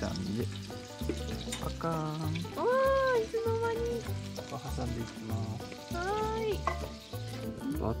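Hamburger patties and eggs frying in oil in skillets, a steady sizzle. Background music with a low beat and a few held melodic notes plays over it.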